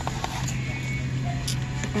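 Store ambience: faint background music over a steady low hum.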